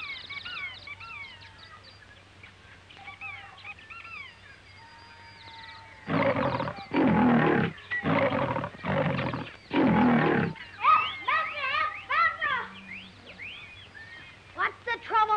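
Jungle birds chirping and whistling in short rising and falling calls, then a big cat, the tiger, roaring five times in quick succession. The bird calls start again after the roars.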